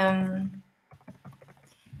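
A woman's drawn-out hesitation "eh" trails off. It is followed by a second of faint, irregular clicks of typing on a computer keyboard.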